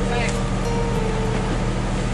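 A truck's motor running steadily, a constant low hum.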